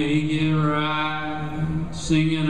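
A man singing one long, steady, wordless note into a microphone at a live solo performance, breaking off just before the end.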